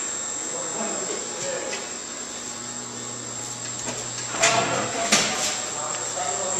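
Steady low machinery hum in a plant room, with a few sharp metallic clanks in the second half that fit footsteps on a steel stairway.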